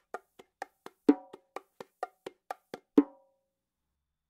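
Bongos played in the basic martillo pattern: a steady run of light hand strokes, about four a second, with a louder ringing open tone on the larger drum about every two seconds. It stops on an open tone about three seconds in.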